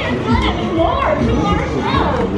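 Indistinct voices of children and adults talking and calling out in an outdoor crowd, with a low rumble underneath.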